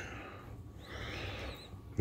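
A faint breath lasting about a second, over low room noise.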